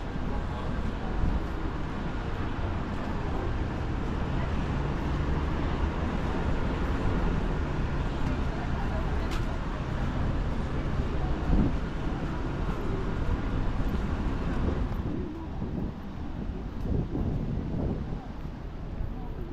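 Steady city traffic noise from the road below, mostly a low rumble, with wind buffeting the microphone. It quietens somewhat a few seconds before the end.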